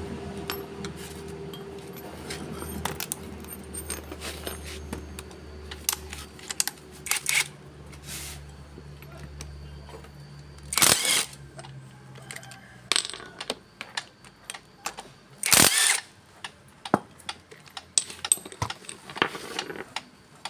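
Metal tools and engine parts clinking and clattering on a concrete floor while a Yamaha Mio cylinder head is stripped. There are two short bursts from a cordless impact wrench, about 11 s and 16 s in, as it spins off the head's screw-in valve-tappet covers.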